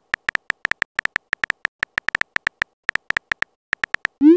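Texting app's keyboard typing sound effect: a rapid string of short, high clicks, about eight a second, with a couple of brief pauses, as a message is typed out.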